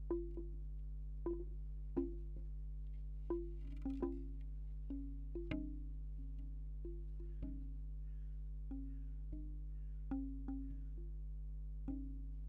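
Bamboo wind chime tubes knocking together in the wind at an irregular pace, about one or two hollow wooden clacks a second. Each clack has a short, pitched ring, picked up close by contact microphones on the tubes, with a steady low hum underneath.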